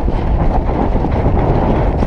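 Loud, steady wind rush buffeting a jockey's on-board camera microphone at full gallop, with the low rumble of the horse's hooves on turf under it.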